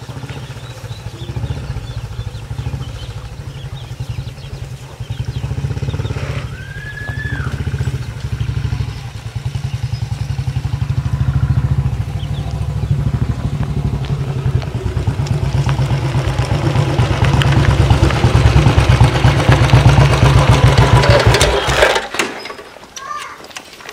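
Motorcycle engine running with a steady low, rhythmic thump, getting louder over the last few seconds.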